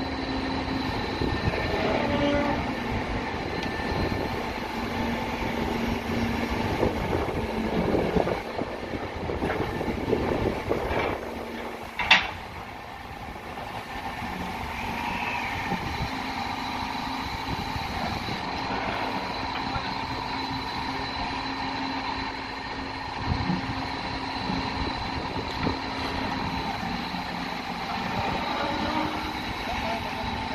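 Caterpillar backhoe loader's diesel engine running steadily while its bucket digs in a trench, with a single sharp knock about twelve seconds in, after which the running is a little quieter and steadier.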